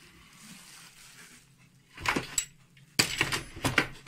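Handling noise of a telescope packed in bubble wrap in a wooden box. A few sharp knocks come about two seconds in, then a quick run of crackling clicks as the plastic wrap and parts are moved.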